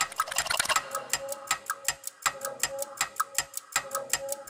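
Countdown-timer ticking sound effect: fast, even clock ticks, several a second, marking the time running out.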